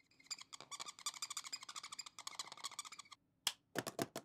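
A rapid run of small sharp clicks, several a second, that stops abruptly about three seconds in and starts again near the end.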